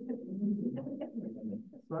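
A person's low, wordless voice, breaking into a laugh near the end.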